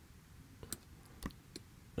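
A few faint clicks of a computer mouse against quiet room tone, two of them clearer, at about two-thirds of a second and a second and a quarter in.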